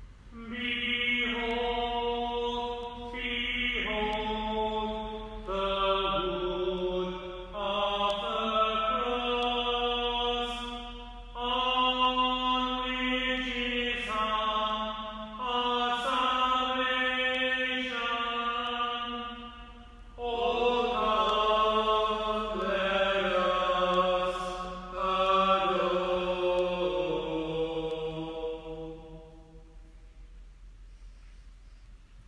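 A single unaccompanied voice chanting a slow liturgical melody in phrases of held notes that step up and down in pitch, with a short break about two-thirds of the way through.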